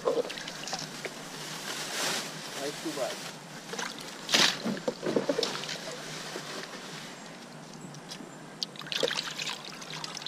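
Hands sloshing and splashing water in a plastic bucket of live bait fish, in irregular bursts, the sharpest splash about four seconds in.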